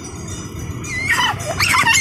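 A toddler's high-pitched squeals and shouts of excitement, starting about a second in and rising and falling in pitch.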